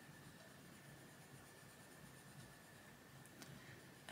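Faint rubbing of a Faber-Castell Polychromos coloured pencil moving on paper, going over earlier layers of orange to blend them.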